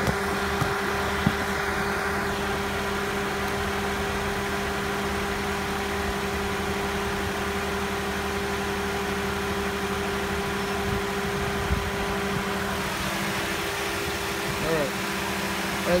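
Toyota Corolla's four-cylinder engine idling steadily with a constant hum, with a few light handling clicks.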